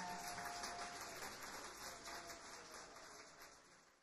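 Audience applause after the last piece, fading out to silence. A faint ringing tone lingers underneath for the first second or two.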